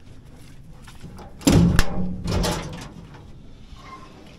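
Engine-compartment side door of a John Deere 690C excavator being unlatched and swung open: a sudden metal clatter about one and a half seconds in, with a sharp knock just after, fading out within about a second.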